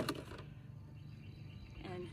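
A rock dropping into an empty plastic milk jug, one sharp clack right at the start, followed by faint handling of the jug and its cap.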